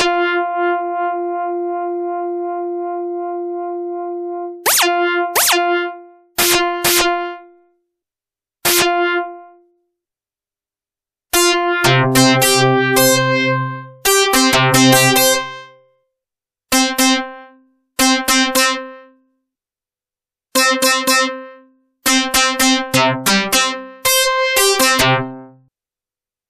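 Yamaha Reface DX four-operator FM synthesizer playing an electric-guitar-like patch with no spoken words. First a long held note slowly fades, then short single notes follow, and from about eleven seconds in come fuller notes of several pitches with a lower note under them. Each note starts with a short burst of noise from a fast pitch envelope on the modulators, meant to copy a finger plucking a guitar string.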